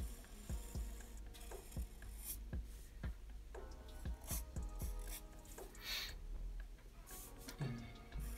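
Black marker pen stroking across paper: a series of short scratchy strokes, about one a second, as hair lines are drawn. Faint background music underneath.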